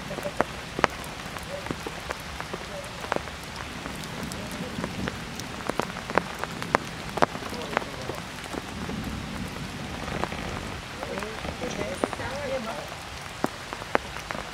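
Heavy rain falling steadily on stone and foliage, with scattered individual drops striking close by in sharp taps.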